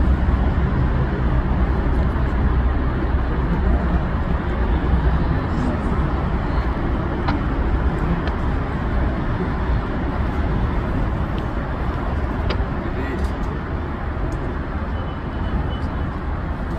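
Indistinct voices of a crowd over a steady low rumble, with no single voice standing out.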